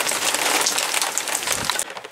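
Heavy rain mixed with hailstones pelting concrete paving slabs, a dense patter of fine impacts. A low thump comes shortly before the end, and then the downpour sound drops away suddenly.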